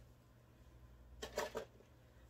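A few quick spritzes from a hand-held trigger spray bottle, bunched together a little over a second in, wetting a curly synthetic wig.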